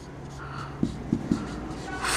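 Marker writing on a whiteboard: a few short taps and strokes about a second in, over a steady low room hum.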